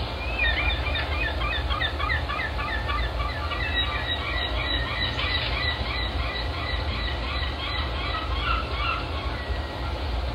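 A flock of birds calling, many short chirps overlapping a few times a second, over a steady low rumble. The calls stop about a second before the end.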